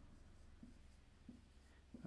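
Faint squeak and rub of a dry-erase marker writing on a whiteboard, a few soft strokes.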